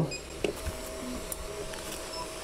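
Elegoo Neptune 4 Pro 3D printer's stepper motors driving the print head to the middle of the bed. There is a click about half a second in, then a faint, steady whine.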